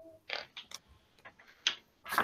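A handful of light, irregular clicks and ticks, spaced unevenly about half a second apart.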